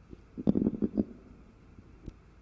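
Microphone handling noise: a short cluster of low knocks and rubbing, lasting about half a second and starting about half a second in.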